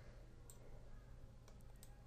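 Near silence with a few faint computer mouse clicks: one about half a second in and a short cluster near the end.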